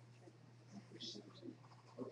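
Near silence: room tone with a steady low hum and faint, indistinct murmurs.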